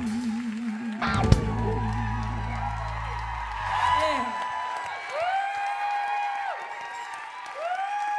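A live band's song ends: a singer's held note with vibrato and a low sustained chord ring out, with a sharp drum hit about a second in, and the chord fades by the middle. The audience then whoops and cheers.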